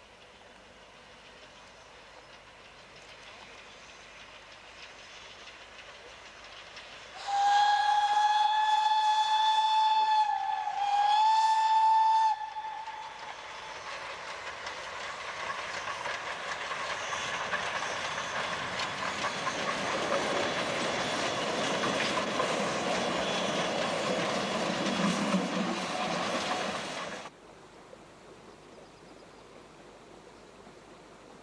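A narrow-gauge steam train double-headed by locomotives SKGLB No. 4 and Mh.6 sounds its steam whistle in two long blasts, about five seconds in all, with a slight dip in pitch between them. Then the train's running noise swells as it passes, and cuts off suddenly near the end.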